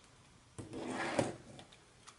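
Pencil drawn along the edge of a steel ruler across paper: a single rubbing stroke of under a second, starting about half a second in and ending in a slightly louder bump.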